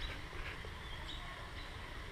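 Quiet outdoor ambience: a steady low rumble with a couple of faint, short high chirps about half a second and a second in.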